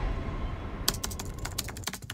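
Rapid typing: a quick run of sharp keystroke clicks starting about halfway through.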